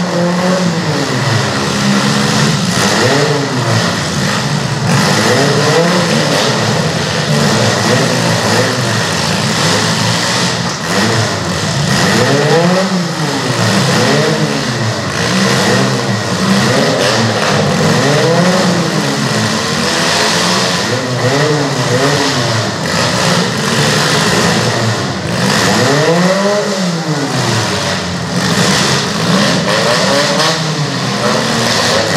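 Several small demolition-derby cars' engines revving up and down over and over, overlapping, as the cars drive and ram one another.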